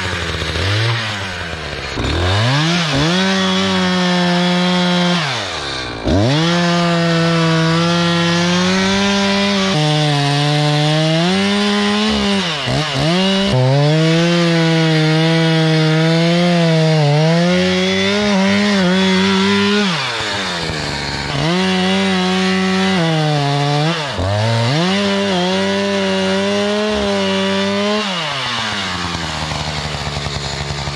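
Two-stroke chainsaw cutting through a large oak trunk at full throttle, making the back cut to fell the tree. The revs drop sharply and climb back up several times as the throttle is let off and squeezed again.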